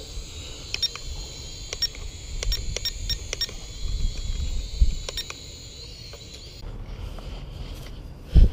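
Syma X5C toy quadcopter's propellers making a high, slightly wavering whine with scattered sharp clicks. There is a low rumble of wind on the microphone. The whine cuts off suddenly about six and a half seconds in.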